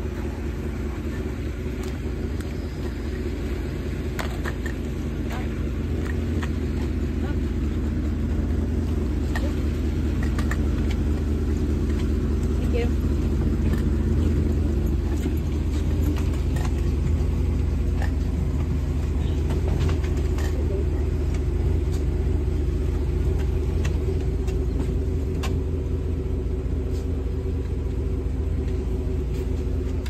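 Small shuttle bus engine idling, a steady low rumble, with scattered light clicks and knocks as passengers climb aboard.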